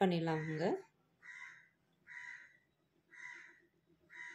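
A crow cawing, three short harsh caws about a second apart, after a woman's speech ends near the start.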